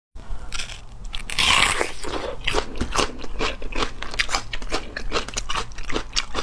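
Close-miked crunching and chewing of a raw red onion being bitten, with a dense run of irregular crisp crackles and a louder crunch about a second and a half in.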